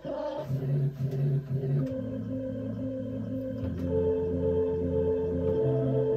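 Synthesizer pad playing long held chords, with a low bass note that moves to a new pitch every second or two and a higher note that comes in and holds partway through.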